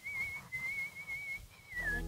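A woman whistling with her mouth closed: one thin, slightly wavering note in three phrases, the last sliding down in pitch.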